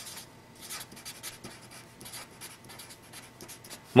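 Felt-tip marker writing on paper: a run of quick, short pen strokes as a word is written out.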